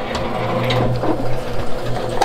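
Late-1940s Invicta model 1M shaping machine running with its clutch engaged, not cutting metal: a steady mechanical running noise over a constant low motor hum.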